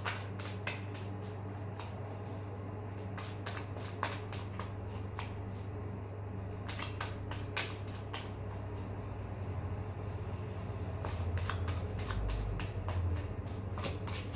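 Tarot deck being shuffled by hand: irregular clusters of quick card clicks and flicks as the cards slide against each other, over a steady low hum.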